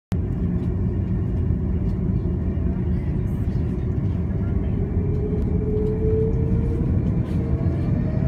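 Jet airliner cabin noise heard from a window seat while the aircraft rolls along the runway: a steady low rumble with an engine whine that slowly rises in pitch as the engines spool up for take-off.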